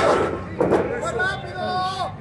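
Spectators shouting and talking close around a wrestling ring, with a sharp smack right at the start.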